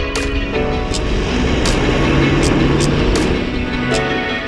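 Background music, and under it a vehicle driving past close by: its engine and tyre noise swell to a peak about two seconds in, then fade.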